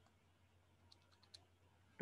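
Near silence, with a few faint clicks about a second in.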